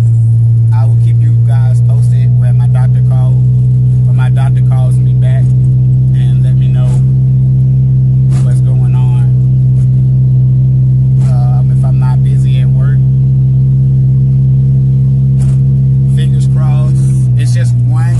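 A man talking over a loud, steady low hum inside a car's cabin. The hum holds one pitch and shifts slightly near the end.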